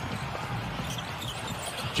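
A basketball being dribbled on a hardwood court, a string of short knocks over steady arena background noise.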